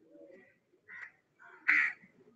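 A bird calling outdoors in a few short, harsh calls. The loudest comes near the end.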